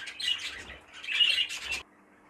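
Budgerigars chirping and chattering in twice-heard clusters of calls, cut off suddenly near the end.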